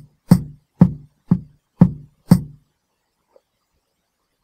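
Programmed drum pattern from a DR-Fusion 2 software drum kit playing back: even hits about two a second, kick drum layered with snare and hand clap. It stops about two and a half seconds in, and a faint click follows.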